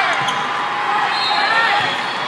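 Volleyball rally: a couple of dull thuds of the ball being played off players' arms and hands, about a fifth of a second in and near the end, over the voices of players and spectators in a large, echoing hall.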